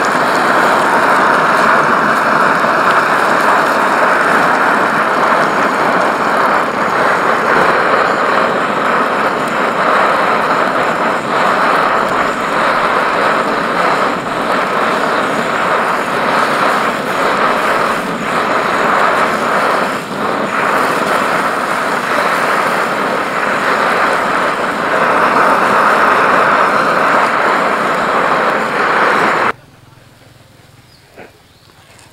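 Steady roar of a pressurized camping stove's burner under a frying pan, with an omelette sizzling in the oil. The sound cuts off suddenly just before the end.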